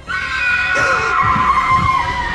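A sudden, loud horror-score sting: several clashing high tones start at once and are held, with a short falling swoop about a second in.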